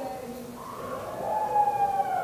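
A man's drawn-out hesitation sound, a held "uhh" while he thinks, as one long faint tone that bends gently in pitch before he speaks again.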